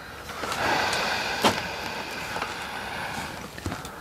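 A motor running steadily with a whining hum, louder from about half a second in, with one sharp click in the middle.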